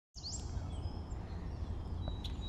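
Birds chirping briefly, one rising chirp near the start, over a steady low rumble of outdoor background noise.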